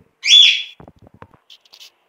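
A single short, high chirp that sweeps up and then holds briefly, the loudest sound, followed by faint scattered ticks of a silicone spatula stirring canjica in an aluminium pot.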